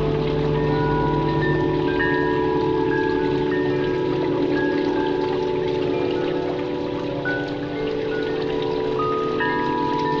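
Ambient meditation music: sustained low drone tones under scattered, held, high chime-like notes.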